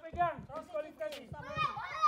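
Children's voices calling out during play, fairly quiet and without clear words.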